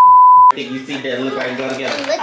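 A 1 kHz test-tone beep, the tone that goes with TV colour bars, held steady for about half a second and cut off suddenly. After it come voices talking in a room.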